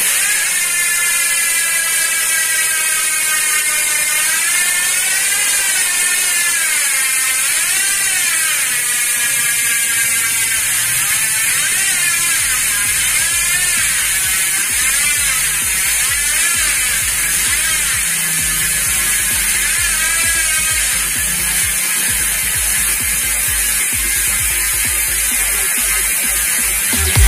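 Syte Instinct D455 rear hub freehub ratcheting as the wheel coasts in a stand. Its rapid clicks merge into a loud, high buzz whose pitch wavers up and down and sinks near the end as the wheel slows.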